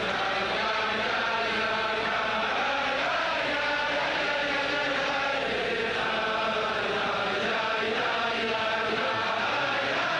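A large crowd of men singing a Chassidic niggun together, a continuous melody with no pause.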